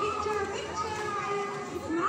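A crowd of children talking and calling out over one another, several high-pitched voices at once.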